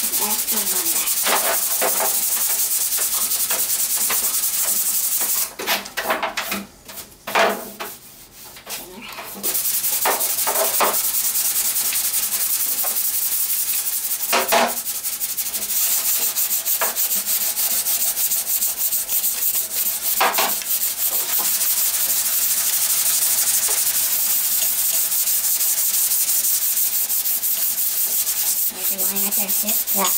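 Body filler on a steel car hood being hand-sanded with sandpaper and a sanding block: a steady scratchy rasp of back-and-forth strokes. The sanding breaks off for about four seconds, starting about five seconds in, with a few brief scrapes in the gap.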